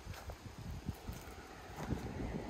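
Wind buffeting the microphone in irregular low gusts, strongest near the end.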